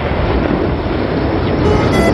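Low, steady rumble from a large explosion, carrying on after the blast. Music with held string notes comes in near the end.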